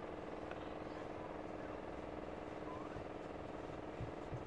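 Steady background hum, a low, even drone that holds unchanged throughout.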